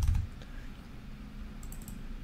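A few light computer-keyboard keystrokes, short clicks spaced out over the couple of seconds, as letters are typed in.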